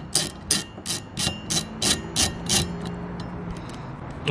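Ratchet wrench loosening the nut on a car's rear wiper arm: short bursts of ratchet clicking, about three a second, that stop a little past halfway as the nut comes free.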